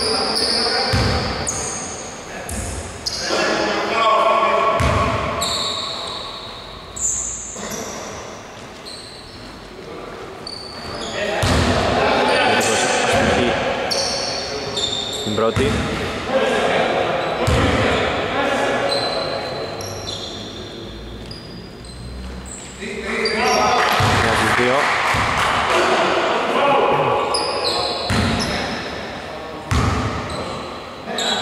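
A basketball bouncing on a hardwood gym floor in irregular thuds, with indistinct voices echoing in the large indoor hall.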